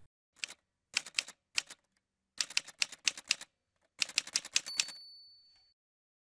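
Typewriter sound effect: quick runs of keystrokes in several groups, ending with a single bell ding about four and a half seconds in that rings for about a second.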